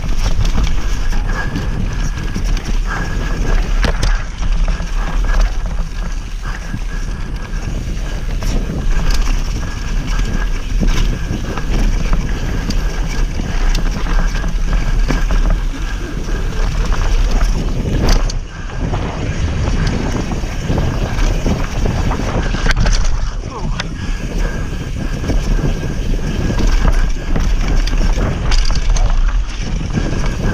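Mountain bike ridden fast down dirt singletrack, heard from a camera on the rider: wind rushing over the microphone, tyres rolling on dirt and leaf litter, and the bike rattling over bumps. A few sharp knocks stand out, about four seconds in and twice more in the second half.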